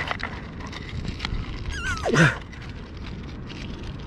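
Handling of a metal detector's large search coil as it is pushed onto the shaft, with a few sharp plastic clicks, over a steady low rumble. About two seconds in comes a short falling voice-like sound.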